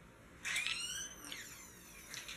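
A single high-pitched squeak, under a second long, whose pitch rises and then falls.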